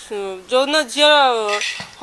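A woman speaking in Odia.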